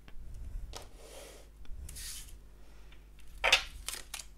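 Tarot cards and decks being handled on a tabletop: soft sliding and rubbing swishes with a few light taps, and the loudest swish of cards near the end.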